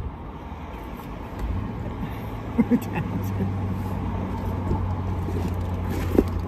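A car engine idling close by: a steady low hum that comes in about a second and a half in and holds.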